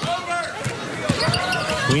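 A basketball dribbled on a hardwood court during play, several sharp bounces in a row.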